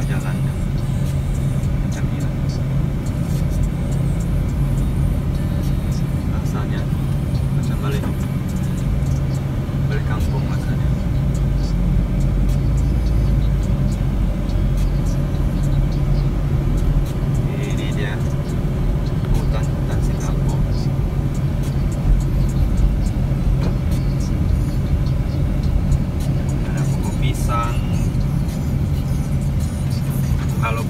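Steady low engine and road hum heard inside a moving car's cabin.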